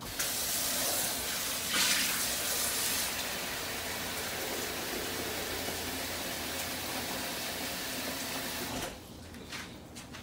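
Kitchen tap running, a steady rush of water filling a bowl. It is louder for the first few seconds and shuts off about nine seconds in.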